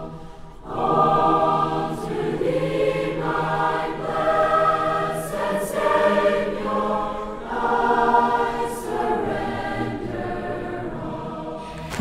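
Church choir singing an offertory hymn in long, held phrases. A short pause comes at the start, and the singing picks up again about a second in, then fades out near the end.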